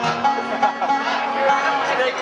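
Acoustic guitar played live, picking held notes as a song begins, with a short laugh at the start.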